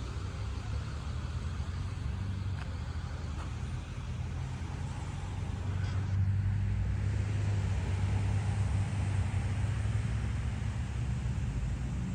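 Road traffic rumble from the adjacent street: a steady low engine-and-tyre hum that swells a little louder about halfway through, as a vehicle goes by.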